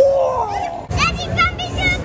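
Excited voices on a dodgem ride: a falling cry at the start, then a string of short, high-pitched children's squeals from about a second in. A short knock comes just before the squeals, and a low rumble runs underneath.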